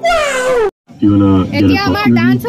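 A man's high-pitched, drawn-out comic cry that falls in pitch for under a second over steady background music, then cuts off abruptly. A woman starts talking about a second in.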